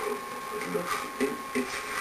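A faint, halting voice over a steady high-pitched tone and hiss.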